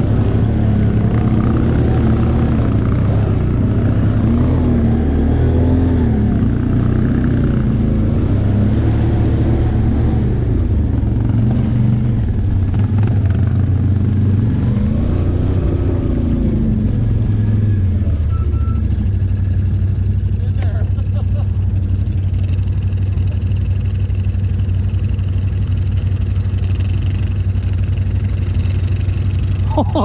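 ATV engine running under changing throttle, its pitch rising and falling for the first half. About eighteen seconds in it settles to a steady idle.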